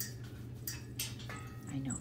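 Soft rustling and a few faint clicks as a hand scratches a small dog's fur, over a steady low hum; a woman's voice comes in near the end.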